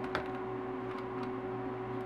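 A steady electrical hum with a few faint steady tones above it, with one faint click shortly after the start.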